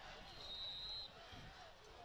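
Faint open-air football field ambience of distant crowd and voices, with one short, thin referee's whistle blast starting about a quarter second in and lasting under a second.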